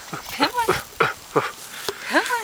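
A small dog yipping about five times in quick succession: short, high calls, each falling in pitch.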